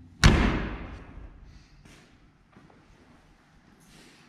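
A cab door of a 1954 Chevrolet pickup slammed shut: one loud bang just after the start, dying away over about a second.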